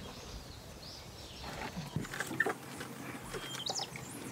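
Faint scattered bird chirps, short rising calls mostly in the second half, with a few light clicks and knocks.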